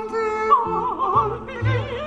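Mezzo-soprano singing in operatic style, accompanied by grand piano and double bass. A held note gives way about half a second in to quick, swooping runs that rise and fall with wide vibrato.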